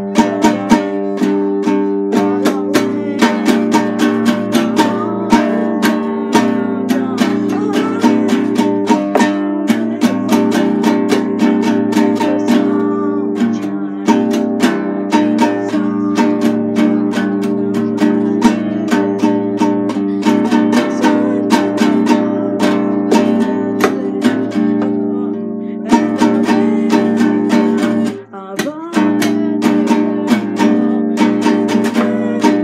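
Music: a band song led by an acoustic guitar strummed in a steady rhythm, with a brief break near the end.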